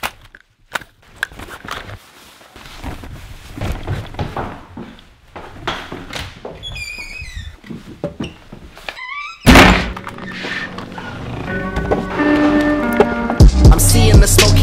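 Scattered thunks and clicks of a bag being packed and a longboard being handled. About nine and a half seconds in, music cuts in with a loud hit, and a heavy bass beat builds near the end.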